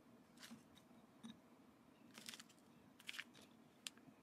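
Near silence, broken by about five faint, brief taps and rustles as cut pieces of a chocolate protein bar are picked up and set down one by one on a plate.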